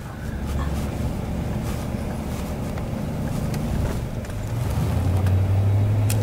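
Vehicle engine and road noise heard from inside the cabin while driving: a steady low hum over a hiss of noise, stepping up in pitch and growing louder about four and a half seconds in.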